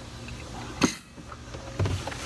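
Hard plastic pet kennel being handled as it is taken apart: a sharp plastic knock just under a second in and a duller thump near the end as the top shell comes off the base.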